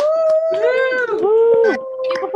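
Several people whooping and cheering at once, with long overlapping 'woo' calls that rise and fall in pitch, heard over a video call.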